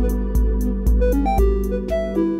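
Eurorack modular synthesizer playing an ambient sequence: a Make Noise Rene sequencer driving an oscillator and Mutable Instruments Rings, with plucked and held notes changing pitch over a low beat about twice a second. The low beat fades out near the end.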